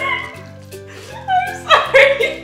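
Background music with steady low notes, over which women squeal and laugh loudly, the laughter picking up in quick repeated bursts about a second and a half in.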